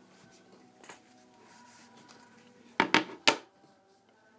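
Three quick, sharp knocks on a hard tabletop close together, about three seconds in, as objects are handled and set down near the microphone; a small click comes about a second earlier.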